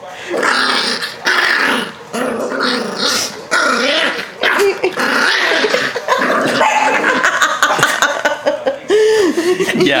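Yorkshire terrier growling in a long run of bouts with short breaks, with a few yips mixed in, as it protests at being held and tickled.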